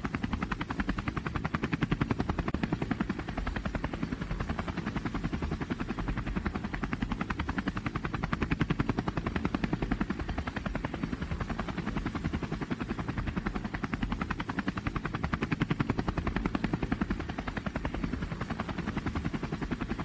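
DJI Phantom quadcopter's motors and propellers whirring steadily, heard from the onboard camera, with a fast, even pulsing.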